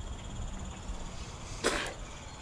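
A person coughs once, a short burst near the end, over a low steady rumble.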